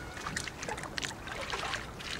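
Water sloshing and splashing as a plastic bucket bails out a small rowboat, scooping up water and tossing it over the side, with a few light knocks.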